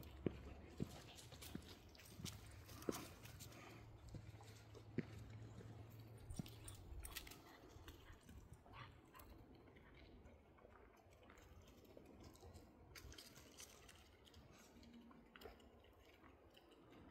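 Near silence: faint scattered clicks and scuffs, with a low rumble that stops about seven seconds in.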